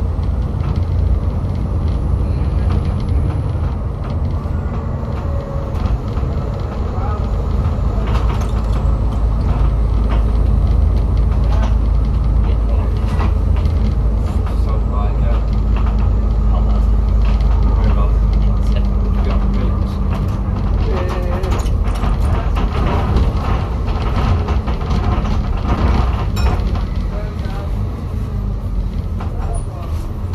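On board an Alexander Dennis Enviro400 double-decker bus under way: steady low engine rumble and road noise, with a faint drawn-out tone in the middle and a run of rattles and clicks through the second half.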